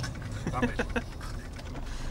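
Laughter and a spoken word over the low, steady rumble of a tour coach, heard from inside the cabin.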